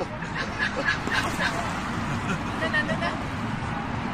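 Indistinct chatter of people, with a quick run of short, high bird calls in the first second and a half and a few more near three seconds.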